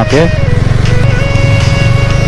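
Motorcycle engine running as the bike rides along, a rapid low pulsing, with background music over it.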